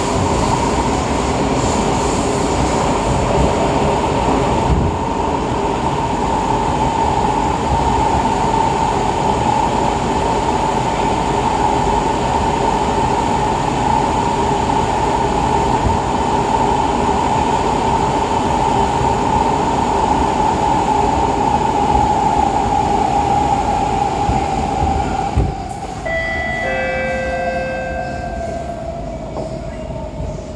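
Cabin noise of a Siemens C651 metro train running at speed: a steady rumble from wheels and rails, with a whine from its GTO-VVVF traction equipment that slowly falls in pitch. About 26 seconds in, the rumble drops as the train comes out of the tunnel, and a few short steady tones sound.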